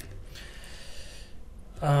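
A person breathing out audibly in a sigh lasting about a second, followed near the end by speech starting.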